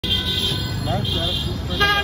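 Street traffic running steadily, with vehicle horns tooting, one sounding near the end.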